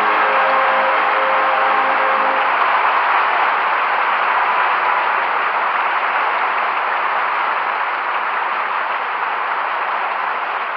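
Opera-house audience applauding: a dense, even ovation that slowly eases off, on an old 1958 live recording. The last orchestral tones die away in the first two or three seconds.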